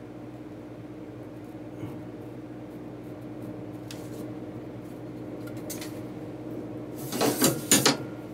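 A metal ruler set down and slid across drafting paper, a loud scraping clatter of about a second that comes about seven seconds in. Before it there is only a steady low hum with a few faint ticks from pencil and triangle work on the paper.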